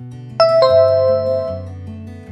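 A two-note electronic 'ding-dong' chime, the second note lower, rings out and fades over steady background music. It is a quiz sound effect that comes as the correct answer is marked.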